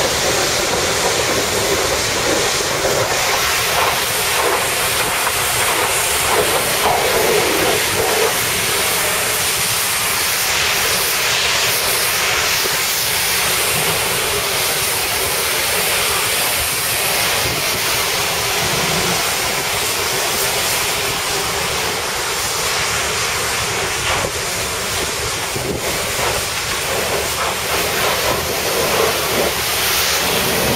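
Steady, loud rushing noise of wind and sea over the deck of a ship running at full ahead.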